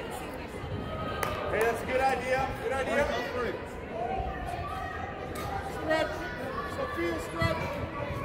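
Voices of spectators and players calling and shouting across a large echoing indoor sports hall during a youth soccer game, with a few sharp knocks among them.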